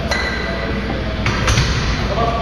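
A metallic ping from gym equipment being struck, ringing briefly as it fades, followed by two more knocks about a second and a half in.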